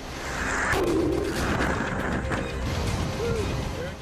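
Hurricane wind and storm-surge water rushing: a loud, dense noise that swells about a second in and holds, with documentary music faintly under it.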